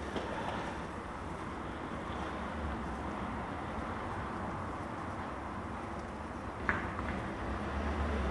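Steady outdoor background noise with a low rumble, and one short sharp click a little under seven seconds in.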